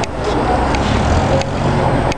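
Low, steady vehicle rumble at a city bus stop, with a few faint clicks.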